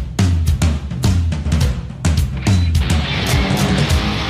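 Rock song intro: a steady drum-kit beat with bass, and electric guitar coming in near the end.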